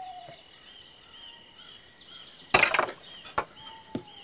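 Rural outdoor ambience: a steady high insect trill with short chirps repeating about twice a second. About two and a half seconds in there is a loud, sharp knock or clatter, and a smaller knock follows it.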